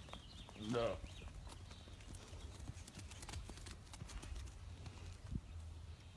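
Faint, scattered light knocks and clicks of a young Highland calf's and a goat kid's hooves on grass-covered ground as the two move about and spar, over a low steady rumble.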